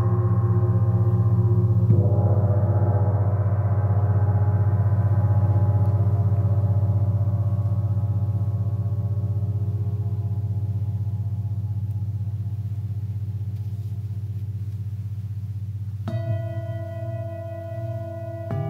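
A large gong rings with a deep, pulsing hum. It is struck again about two seconds in and slowly dies away. Near the end a singing bowl is struck, adding clearer, higher ringing tones.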